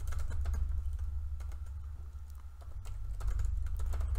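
Typing on a computer keyboard: quick runs of key clicks, thinning out briefly in the middle, over a steady low hum.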